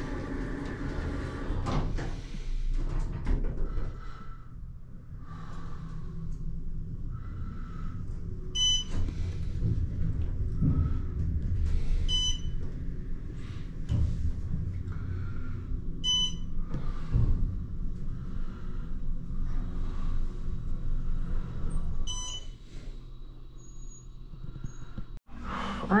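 Hotel elevator car descending: a steady low rumble of the car in motion, with four short high electronic chimes a few seconds apart, the car's signal as it passes floors on the way down.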